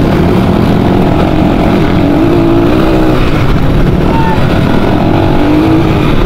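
Dirt bike engine running steadily while riding along a rough dirt road, under a loud low rumble of wind and road noise, with the engine note rising and falling slightly as the throttle changes.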